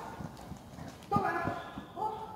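Running footfalls of a person and a dog thudding on the sand footing of an indoor arena, with a short called word from the handler a little past the middle.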